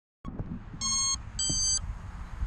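Two short electronic beeps from an FPV quadcopter, about half a second apart, the second higher in pitch than the first.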